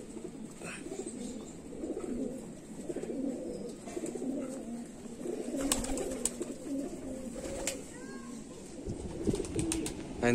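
Sialkoti pigeons cooing continuously in a loft, several birds' low, wavering coos overlapping. A few sharp clicks or taps come in the second half.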